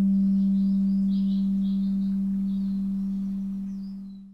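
A singing bowl ringing out after a single strike. It holds one low, steady tone that slowly fades and dies away just after the end, closing the guided relaxation.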